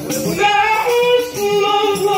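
A solo voice singing a devotional maulid chant (qaswida) in long, held notes that glide and waver between pitches.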